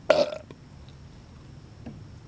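A man's single short, loud burp near the start, lasting about a third of a second. A faint click follows near the end.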